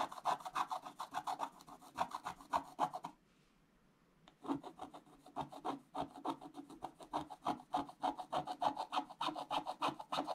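Wooden scratch stylus scraping the black coating off a scratch-art page in quick short strokes, several a second. The scratching stops for about a second a few seconds in, then starts again.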